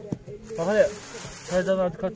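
Men's voices: two short spoken utterances, one about half a second in and one near the end, in casual conversation.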